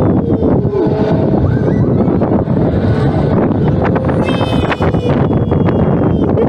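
Wind buffeting the microphone as a Larson Flying Scooters ride tub swings round at speed: a loud, steady rushing.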